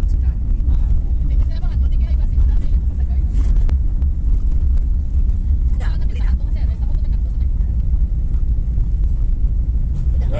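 Steady low rumble of road and engine noise inside a moving vehicle's cabin.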